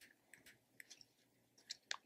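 Near silence, with a few faint ticks and scratches from a ballpoint pen writing on printer paper.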